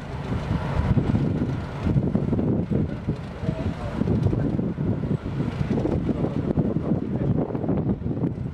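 Wind buffeting the microphone in uneven gusts, over a low rumble of heavy machinery.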